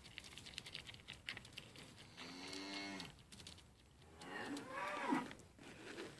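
Mini LaMancha goats bleating twice: a short steady call a couple of seconds in and a longer wavering call near the end. Before the calls comes the crunching of grain being eaten from a hand.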